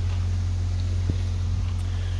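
A steady low mechanical hum, like a small engine idling, with one faint click about a second in.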